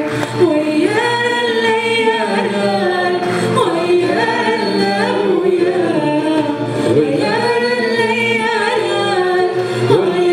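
A woman singing an izran, a Riffian Amazigh sung verse, in long held, gliding notes over a steady low drone.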